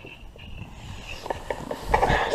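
A few light knocks and rustles, as of a small camera being handled on a bass boat's carpeted deck, over a low steady rumble of wind and water.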